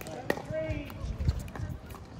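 Pickleball paddle striking the ball with one sharp pop about a third of a second in, followed by softer knocks of the ball on paddle and court.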